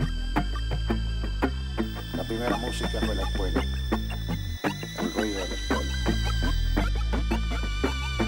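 Live electronic folk music: a drum machine's steady beat over a heavy synth bass line, with held synthesizer tones on top. The beat drops out briefly a little past halfway, then comes straight back.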